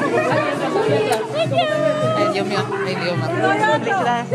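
Several people talking at once over background music playing.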